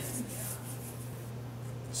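A hand tool scratching against a wall surface, faint and dying away about a second and a half in, over a low steady hum.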